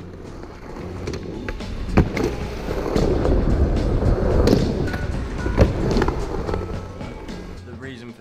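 Skateboard wheels rolling fast over smooth concrete: a steady rumble that swells to its loudest in the middle and fades near the end. Two sharp clacks stand out, about two seconds in and again a little after five seconds.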